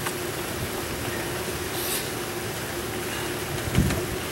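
Steady outdoor background noise with a constant low hum, a brief hiss about halfway through and a soft low thump near the end.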